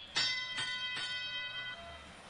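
FRC field sound system playing the teleop-start bell: three bell strikes about half a second apart, ringing and fading, which signal the start of the driver-controlled period of the match.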